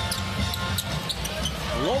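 Basketball arena sound: steady crowd noise with court sounds from the players and ball on the hardwood, and short high squeaks in the first second.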